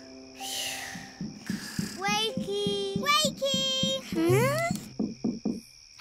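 Soft background music with gentle held notes. A slow, breathy sleeping breath sounds in the first second. Then come a few short wordless cartoon voice sounds, ending in a rising 'hm?' about four seconds in.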